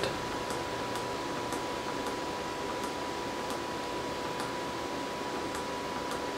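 Computer case fans running steadily at about 1300 to 1700 RPM, with a thin steady whine and faint light ticks about twice a second, sparser toward the end.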